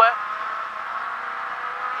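Renault Clio rally car's engine pulling at steady revs under way, heard from inside the cabin, with road and tyre noise underneath.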